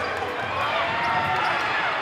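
A basketball being dribbled on a hardwood gym floor, with short gliding sneaker squeaks and the chatter of a crowd in the hall.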